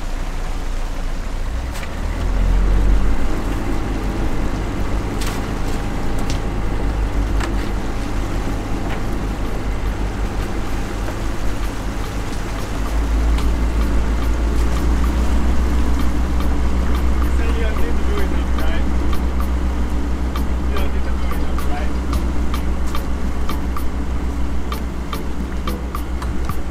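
A fishing boat's engine running with a steady low rumble that grows louder about halfway through, with scattered clicks and knocks over it.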